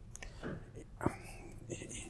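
A brief pause in a man's speech, filled with faint breath and mouth sounds and a small click about a second in.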